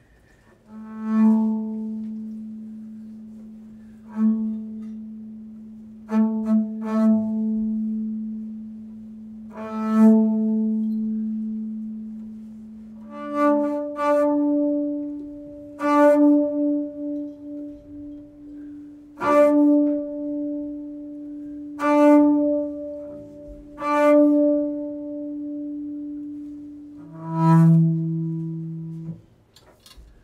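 Solo double bass played with the bow (arco): long sustained notes, each freshly bowed every two to three seconds over a held low pitch. About halfway through the held pitch steps up, and the playing stops about a second before the end.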